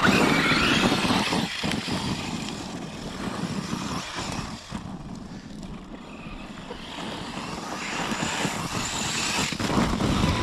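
Traxxas Sledge brushless electric RC monster truck accelerating hard across bark mulch, its motor and tyres loudest as it launches. The sound eases as it drives off and builds again toward the end.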